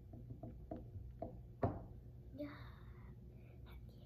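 A child chewing food in a soft rhythm of about three bites a second, broken about a second and a half in by a single sharp knock, the loudest sound; soft whispered, breathy speech sounds follow.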